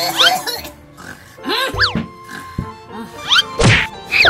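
Cartoon-style snoring sound effects: a low snort followed by a whistle that rises and falls in pitch, repeating about every second and a half, over background music.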